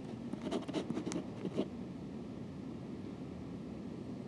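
Faint scattered clicks and scratches of keys working a door lock during the first second and a half, then quiet room tone.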